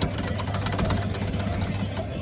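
Coin-operated kiddie ride with a jammed start button, worked by hand at its control panel: a fast, even run of sharp clicks over a steady low hum.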